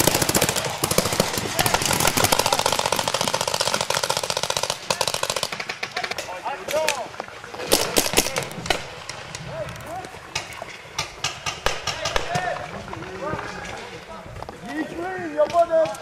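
Paintball markers firing: a dense, rapid run of shots for about the first five seconds, then thinning to scattered single shots.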